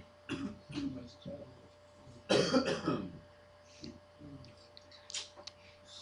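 Scattered, faint voices in a classroom, in short bursts, with one louder burst a little past two seconds in.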